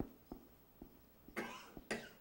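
Marker pen writing on a whiteboard, a few light ticks of the tip on the board, then a short cough about a second and a half in.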